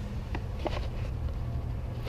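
Steady low rumble of wind on the camera microphone, with a few light clicks from handling a baitcasting reel.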